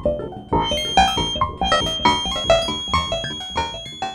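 Synton Fenix modular synthesizer playing a fast run of short plucked notes, with echoes from its analog delay passed through a low-pass filter to cut the delay's high whistle. A thin, steady high whistle from the delay still runs beneath the notes.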